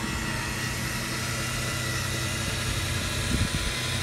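A steady low mechanical hum with a few unchanging pitches, like an engine idling.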